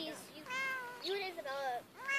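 Domestic cat meowing twice in long, drawn-out calls, each rising and then falling in pitch.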